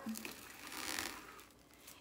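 Plastic cling wrap rustling and crinkling as it is handled, swelling to its loudest about a second in and then fading.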